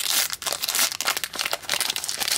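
Foil wrapper of a trading card booster pack crinkling and tearing as it is pulled open by hand, a quick irregular run of crackles.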